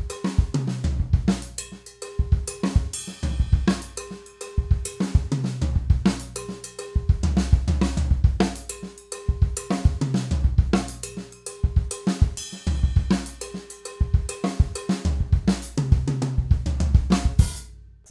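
Drum kit playing a funky sixteenth-note groove that moves around the floor tom, kick drum, snare with accented strokes and ghost notes, hi-hat and an LP salsa cowbell. The same one-bar pattern repeats about every two seconds, and the playing breaks off near the end.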